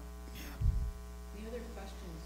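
Steady electrical mains hum in the microphone and sound system, with a single low thump about two-thirds of a second in.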